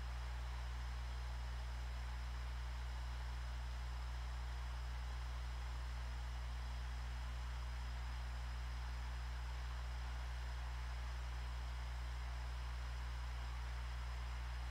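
Steady low electrical hum with a faint hiss behind it, unchanging throughout, with no other sound.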